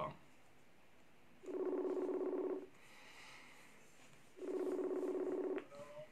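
A steady electric buzz in pulses a little over a second long, repeating about every three seconds; two pulses fall here, about one and a half and four and a half seconds in.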